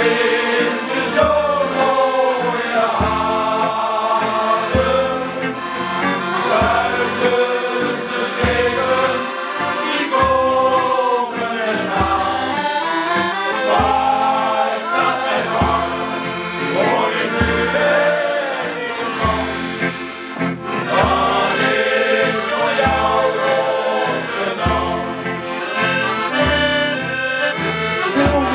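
Accordions playing a sea shanty with a steady, regular bass beat, while a shanty choir sings along.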